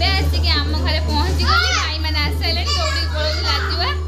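Mostly speech: a high-pitched voice talking excitedly over a steady low hum.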